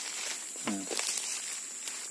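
A man's single short hum or syllable about two-thirds of a second in, over a steady high hiss.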